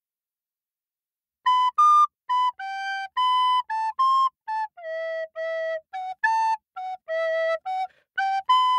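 A flute playing a simple tune of short, separate notes, starting about a second and a half in after a brief silence.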